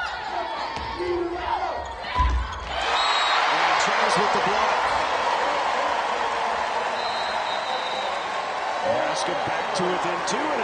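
A volleyball struck hard with a loud thump about two seconds in, then a large arena crowd cheering and clapping for the point, loud and sustained.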